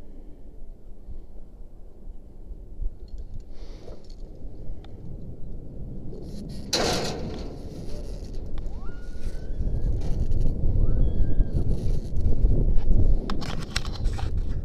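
Wind buffeting the microphone high up on an open tower, a low gusty rumble that grows stronger in the second half. A brief loud rushing burst comes about seven seconds in.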